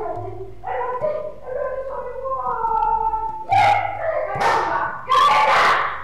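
A woman wailing and crying out in distress. Her drawn-out, pitch-bending cries grow into loud, harsh outbursts over the last few seconds.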